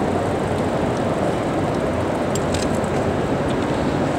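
Steady rushing noise of wind on the camera microphone, with a few faint ticks about two and a half seconds in.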